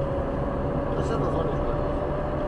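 Road and engine noise inside a moving car: a steady low rumble with a steady whine held at one pitch.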